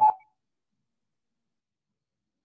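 Audio feedback on a video-call line: a steady ringing tone under the tail of a spoken word, cutting off suddenly a fraction of a second in, then dead silence.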